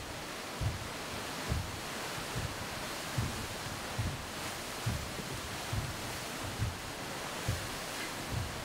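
Performance soundtrack: a steady rushing noise like surf, with a soft low pulse a little more than once a second.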